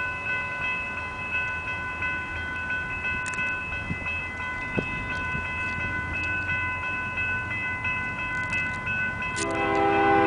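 Steady ringing of a grade-crossing warning bell over the low rumble of an approaching Canadian Pacific freight train. Near the end the lead locomotive's air horn sounds, loud and chord-like, drowning the bell.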